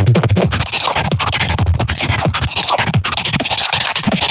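Solo human beatboxing into a handheld microphone: a fast, dense run of percussive mouth sounds with short pitched sweeps between them.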